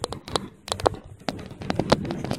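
Stylus tapping and scratching on a tablet's glass screen while handwriting a word: an irregular run of sharp clicks.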